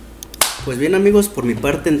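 A single sharp click with a short ringing tail, about half a second in, then a man talking.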